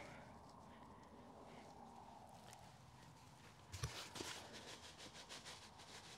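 Near silence at first. About four seconds in comes a soft thump, then faint quick scratching and rustling, several strokes a second, from a hand trowel and hands working loose potting soil.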